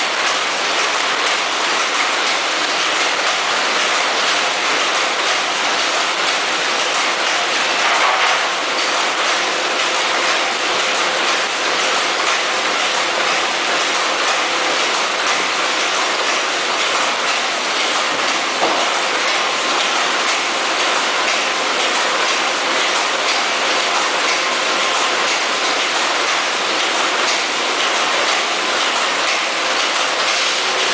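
Vertical form-fill-seal packaging machines running: a loud, steady mechanical clatter with a dense hiss and rapid fine clicking, without pauses.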